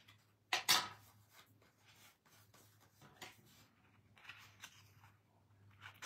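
A pet drinking water from a bowl in the background, faint and irregular, a loud drinker. A short clatter of scissors being handled about half a second in is the loudest sound.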